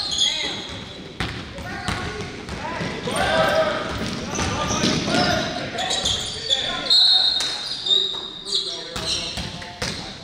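Basketball being dribbled and bounced on a hardwood gym floor, with repeated thuds, sneakers squeaking, and players calling out in a reverberant gym.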